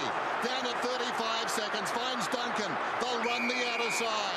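Packed football stadium crowd, a steady roar of many voices during tense late play, with a steady high whistle-like tone in the last second.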